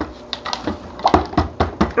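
Stick blender knocking and tapping against a plastic pitcher of soap batter in a run of short, irregular knocks, about six in two seconds, as it is burped to let out trapped air.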